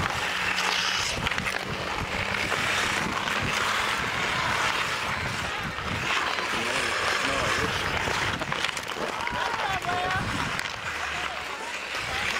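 Ice skate blades scraping on outdoor ice, with hockey sticks clacking against the puck and ice. Players call out in the distance.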